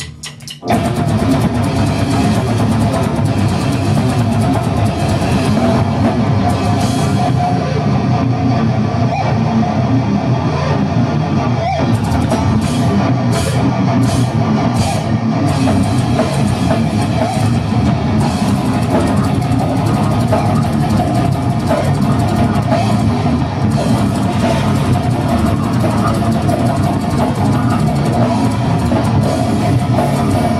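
Brutal death metal band playing live, with electric guitars and a drum kit in a dense, unbroken wall of sound. The band comes in after a brief break about half a second in.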